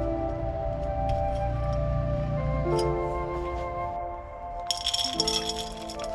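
Calm background music with sustained notes. About two-thirds of the way in, granular bonsai soil rattles as it is poured from a plastic scoop into a ceramic pot.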